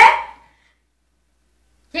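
A loud burst of a child's voice at the very start, fading out within about half a second. Dead silence follows, with even the background hum gone, until speech starts again at the very end.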